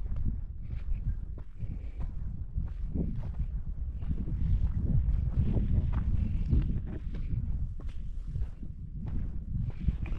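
Footsteps of a person walking at a steady pace on a dry dirt footpath, about two steps a second, over a steady low rumble.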